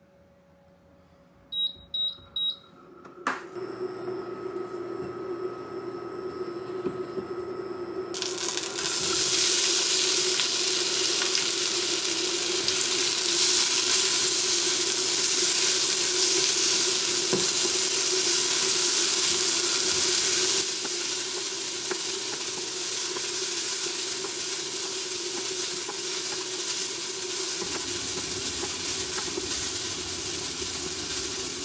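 Three short high beeps from the cooktop's controls, then a steady hum as it heats. From about eight seconds in, sliced onions sizzle loudly as they fry in oil in a ceramic-coated frying pan and are stirred with a spatula. The sizzle eases a little past the twenty-second mark.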